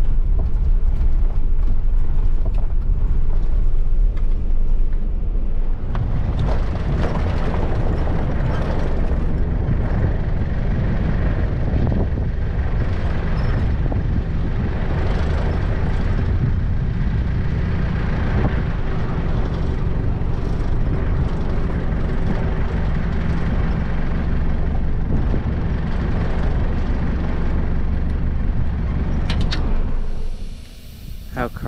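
A four-wheel-drive vehicle driving along a rough sandy dirt track, heard from inside the cab: a steady engine drone with tyre and body rumble. From about six seconds in it turns rougher, with constant rattling and jolting over the corrugated track.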